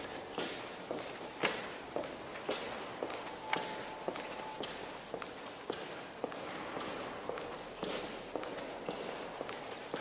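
Footsteps of a person walking at a steady pace on a hard, polished stone floor, with evenly spaced sharp heel strikes.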